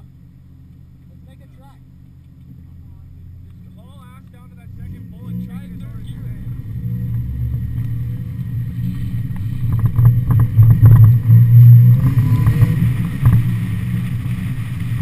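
Mazda Miata's stock 1.6-litre four-cylinder engine idling, then pulling away hard from about five seconds in, its revs and loudness climbing to a peak near the end. Tyre and wind noise build with it on the wet pavement.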